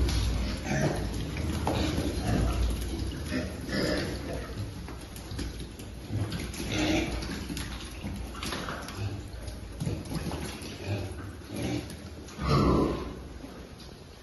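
A group of piglets scrambling over a wet concrete pen floor: an irregular patter and scuffle of trotters, with scattered grunts and a louder call near the end.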